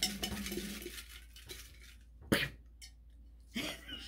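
A hand rummages through paper entry slips inside a large ceramic mug: a rustling with light clinks against the mug in the first second, then one sharper, louder sound a little past halfway.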